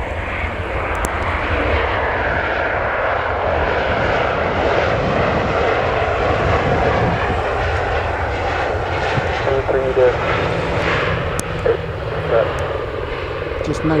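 Jet engines of a Ryanair Boeing 737-800 at high power as it rolls along the runway: a loud, steady jet noise that builds over the first couple of seconds and then holds.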